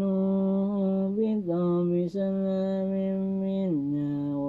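A man's voice chanting Quranic recitation in Arabic, drawing out long held notes in a slow melody, with a short break for breath about two seconds in.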